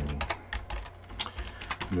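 Computer keyboard keys clicking in quick, uneven succession: about eight keystrokes as a password is typed.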